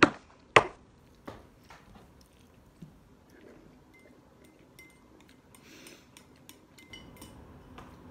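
Chopsticks clinking against ceramic noodle bowls: two sharp clinks about half a second apart at the start, then a few lighter taps and scrapes.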